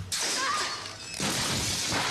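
A crash of shattering glass and breaking debris as a person falls from a ladder, with a second loud burst a little over a second in.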